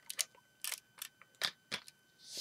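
Plastic Lego bricks clicking and tapping, about half a dozen sharp clicks, as a Lego Jedi Starfighter model is handled and set down on a hard surface.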